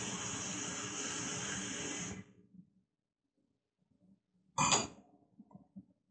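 Kitchen faucet running into a glass, a steady hiss that cuts off about two seconds in when the tap is shut. A brief, louder sound comes near five seconds in, followed by a few faint small knocks.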